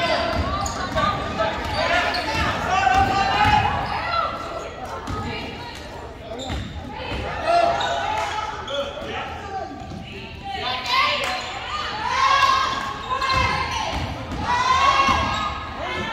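A basketball being dribbled on a hardwood gym floor during play, with repeated short bounces. Voices call and shout across the large gym over it.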